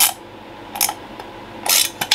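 Socket ratchet clicking in three short bursts as a bolt on an aluminium recoil pull-start housing is tightened.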